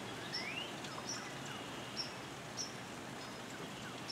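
Quiet outdoor ambience: a steady hiss with small birds calling, short high chirps every half second or so and a rising whistle in the first second.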